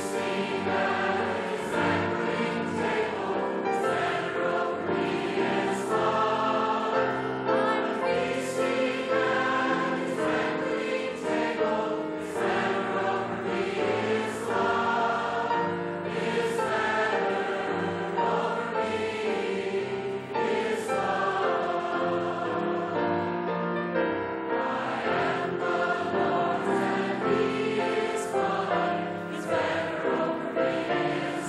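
A large congregation of men and women singing a hymn together, many voices in one sustained chorus.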